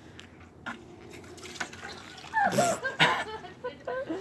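Water running from a garden hose, filling a water balloon on the nozzle, with a brief louder burst about two and a half seconds in.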